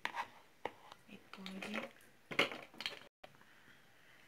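A spatula knocking and scraping against a plastic blender jar while stirring thick soap paste thinned with water: a few sharp clicks and knocks, spread out and quiet.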